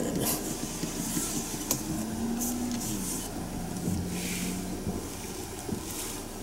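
Inside a small car's cabin: the engine runs quietly at low revs while the car is manoeuvred slowly to park. There is a single sharp click a little under two seconds in.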